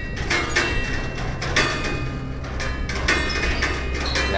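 Stainless steel tube chimes struck one note after another in a steady melody, about two strikes a second, each note ringing on, over a low steady hum.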